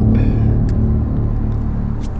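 A motor vehicle's engine running close by: a loud, steady low rumble.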